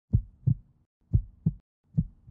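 Heartbeat sound effect: low double thumps, lub-dub, repeating about once a second, with silence between the pairs.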